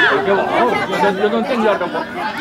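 Several voices shouting and chattering over one another, with no other sound standing out.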